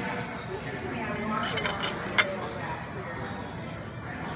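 A metal fork set down with one sharp clink about two seconds in, after a few lighter cutlery clinks, over the steady chatter of other diners.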